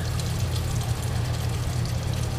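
Bathroom sink faucet running a thin, steady stream of water over a hand and into a porcelain basin, left running to see whether it turns hot. A steady low hum lies underneath.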